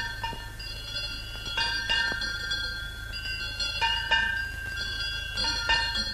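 Temple bell struck again and again, each stroke ringing on with a clear, bright tone. The strokes come in close pairs about every two seconds.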